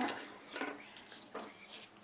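Quiet paper-crafting handling sounds: a few short, soft rustles and taps as a die-cut paper piece and an adhesive dot are handled on the work surface.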